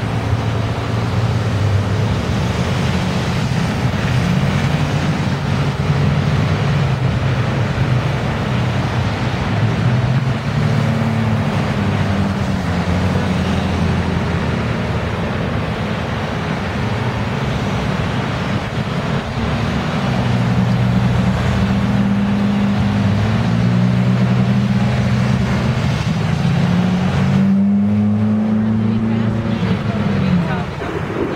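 Motor vehicle engine running close by amid traffic noise, its low drone shifting in pitch, then rising clearly near the end as the vehicle speeds up.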